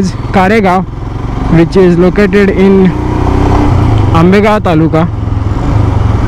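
Royal Enfield Himalayan single-cylinder engine running steadily while riding in traffic, with a person's voice talking in short stretches over it.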